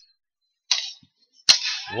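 A pause in the commentary, close to silent, broken by a brief soft hiss and then a single sharp click on the commentator's microphone just before speech resumes.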